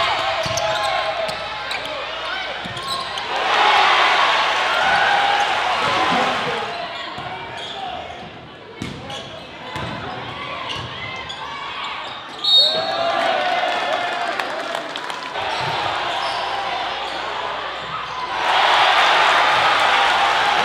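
Live game sound from a basketball gym: crowd voices and shouting throughout, with a basketball bouncing on the hardwood floor. The crowd swells into loud cheering twice, once a few seconds in and again near the end. A brief high-pitched squeak comes about two-thirds of the way through.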